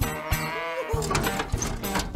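A wavering cartoon animal cry over background music with a steady beat.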